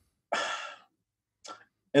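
A man's audible breath, a sigh lasting about half a second, followed about a second later by a much shorter, fainter breath or mouth sound.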